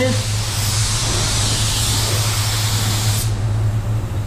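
Automotive paint spray gun hissing steadily as it lays down a wet coat of base on a car panel. The air cuts off a little over three seconds in. A steady low hum runs underneath.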